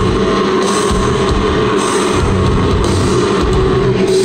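Metalcore band playing live at full volume: distorted electric guitars, bass and drum kit in a dense, continuous wall of sound, heard loud and flattened from the audience.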